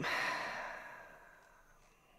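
A man's long breathy sigh, an unvoiced exhale that fades out over about a second and a half.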